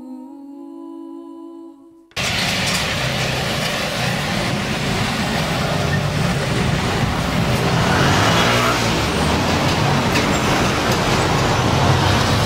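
Soft background music with held tones cuts off abruptly about two seconds in, giving way to loud city street traffic: cars and motor scooters passing close by. One engine's note briefly rises and falls later on.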